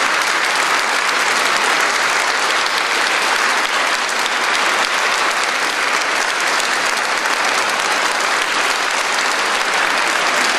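Audience applauding, a steady, dense clapping that holds at one level.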